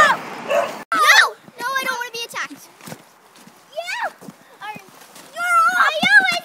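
Young girls' high-pitched wordless cries and squeals, several separate calls, some wavering, with short quiet gaps between.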